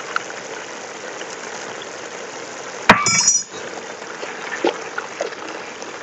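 A pot of tomato-pepper sauce bubbling at a steady boil. About three seconds in, a sharp, briefly ringing clink, like a hard utensil or jar striking, cuts through, with a couple of lighter taps later on.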